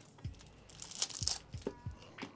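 Pocket-knife blade slitting the cellophane shrink-wrap on a cigar box, the plastic crinkling and tearing, loudest about a second in, with a few light knocks from handling the box.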